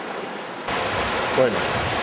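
River water rushing over stones: a steady rush that jumps louder about two-thirds of a second in, where it becomes the fuller sound of a shallow rapid.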